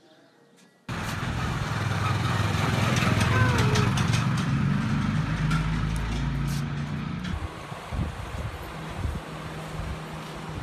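Street ambience that cuts in suddenly about a second in, carrying a motor vehicle's engine running close by as a steady low hum over general street noise. The engine hum drops back after about seven seconds.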